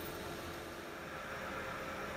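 Steady fan noise from plug-in electric space heaters running: an even hiss with a faint hum under it.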